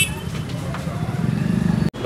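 Busy market street noise: a low, steady vehicle hum under the murmur of a crowd, with a brief high ring right at the start. The sound cuts off abruptly just before the end.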